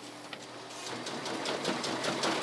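OPEX rapid extraction machine running as ballot envelopes are fed through it, a steady mechanical clatter with fine rapid ticking that grows a little louder about a second in.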